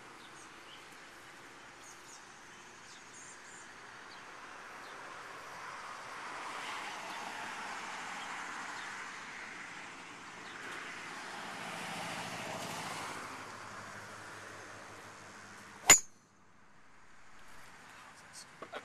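Traffic passing on a road, twice swelling and fading, then the one sharp crack of a golf driver striking a ball off the tee about two seconds before the end.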